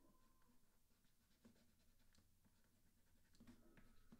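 Near silence, with faint taps and scratches of a stylus writing on a drawing tablet.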